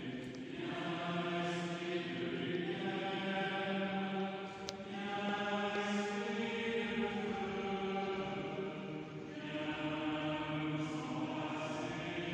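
Voices singing a slow processional chant in a large stone church, in long held notes broken into phrases.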